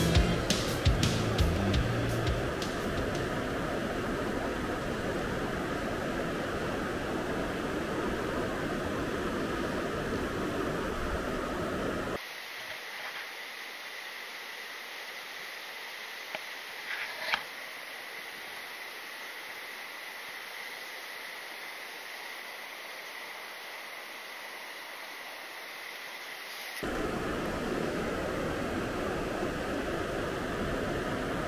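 Mountain stream running over stones, a steady rush of water. From about twelve seconds in, for some fifteen seconds, it turns thin and muffled, as heard from a camera held under the water, with a few small clicks; then the full rush returns.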